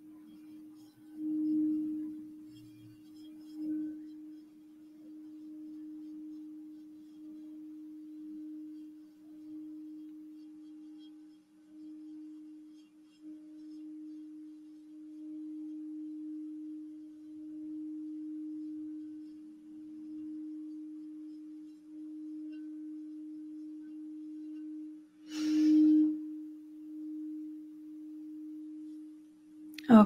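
Crystal singing bowl sung by rubbing a wand around its rim: one steady low ringing tone that swells and fades in slow waves. There are stronger surges about two and four seconds in, and a brief knock of the wand against the bowl near the end.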